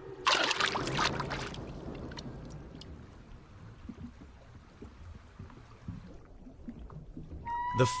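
A short rush of water about a second long, the gulp of a matamata turtle's suction strike as it sucks in a fish, followed by faint underwater noise that fades away. A steady music tone comes in near the end.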